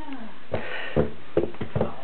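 Handling noise: a run of close knocks and rustles on the camera's microphone, starting about half a second in, as a toddler's head and hands bump against the camera. A short falling vocal sound from the toddler fades out at the very start.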